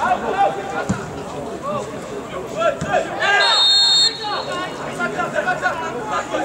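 Referee's whistle blown once, a steady high tone held for almost a second about three seconds in, over players and onlookers shouting.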